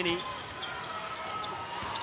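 Arena crowd noise with a basketball being dribbled on the hardwood court.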